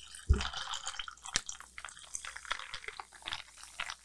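Canned Liquid Death sparkling water poured into a glass of cold brew coffee, fizzing and crackling with many small irregular pops. A single dull thump comes about a third of a second in.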